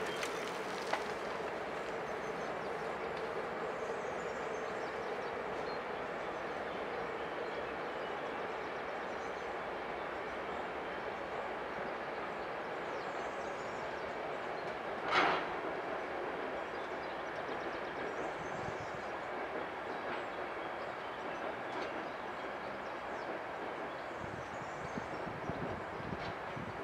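Passenger express train crossing a railway bridge at reduced speed, heard from a distance as a steady running noise of wheels on rail, with a faint steady hum in the first few seconds and one short, louder burst about halfway through.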